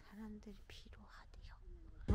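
A faint, quiet voice speaking, low in level.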